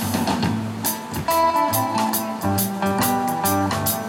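Live acoustic band playing an instrumental passage: strummed acoustic guitars over an upright bass and a drum kit keeping a steady beat.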